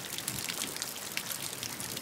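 Steady background water ambience, a constant wash of small patters and splashes like rain on water, running beneath the pause in the reading.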